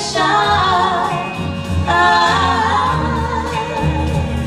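Female vocal trio singing a 1950s–60s girl-group song in close harmony, several voices holding long wavering notes together over a low bass line.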